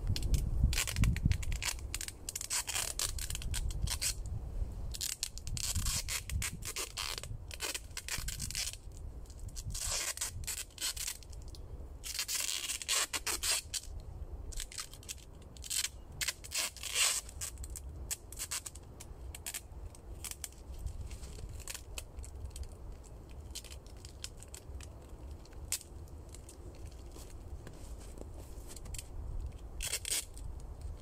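Adhesive tape being pulled off the roll and wound around a wooden crossbar to lash it to the shelter poles, in many short raspy pulls that come in clusters. Underneath is a low rumble, heaviest in the first couple of seconds.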